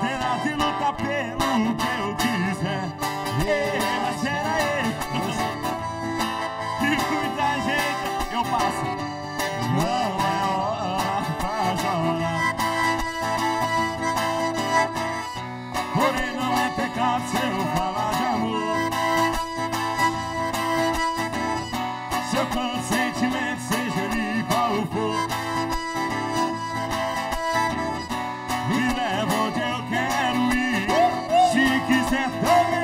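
Live band music led by accordion and acoustic guitar, playing continuously at a steady level.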